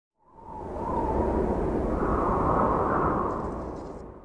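Whooshing, rumbling sound effect that swells in over about half a second, holds steady, then fades away near the end.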